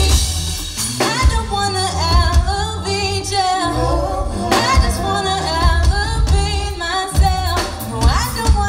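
Live band with drums and keyboards playing a song, a woman singing the lead over a strong low bass.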